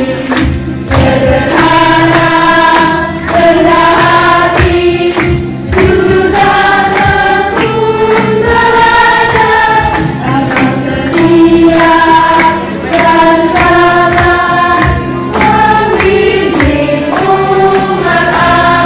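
A young group choir singing a song together, with long held notes over a steady instrumental accompaniment.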